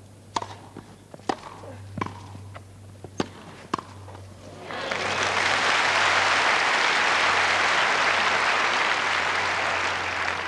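Tennis ball struck by rackets on a grass court: five sharp hits within about four seconds of a short rally. From about five seconds in, crowd applause swells up and carries on loudly.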